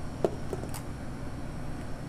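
Steady low hum of a restaurant kitchen's ventilation, with two light clicks about a quarter and half a second in from a metal scoop working cookie dough into a foil pie plate.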